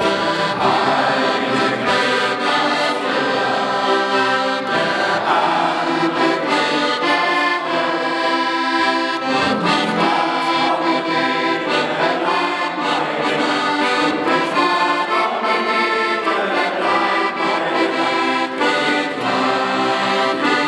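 Accordion playing a tune without a break, its chords and melody notes changing every second or so.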